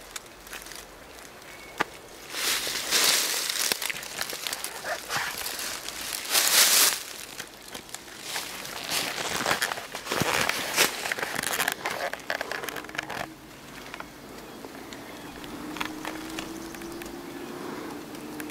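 Footsteps rustling and crunching through dry leaf litter and brush in irregular bursts, with scattered sharp snaps of twigs. A faint steady hum comes in over the last few seconds.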